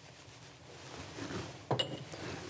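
Quiet handling of a small glass bowl as cornstarch is tipped onto sliced raw beef in a stainless steel mixing bowl, ending with one short clink of glass against the bowl near the end.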